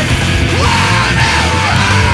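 Loud distorted guitar rock with drums and bass, a yelled vocal line sliding in pitch over the band from about half a second in.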